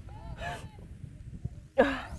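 A person's short strained vocal grunt of effort during push-ups near the end, falling in pitch, with faint breathy voice sounds about half a second in.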